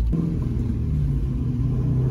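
1973 Camaro restomod's engine and exhaust running while driving, heard from inside the cabin: a steady low exhaust drone that shifts slightly in pitch about a second in.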